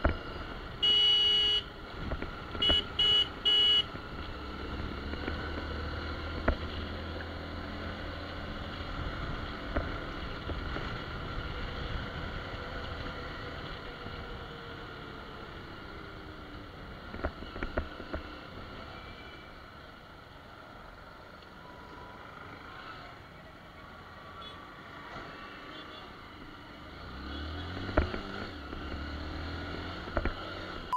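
Hero Impulse motorcycle's single-cylinder engine running, with road and wind noise, while riding in traffic. Near the start a vehicle horn sounds: one longer blast, then three short toots.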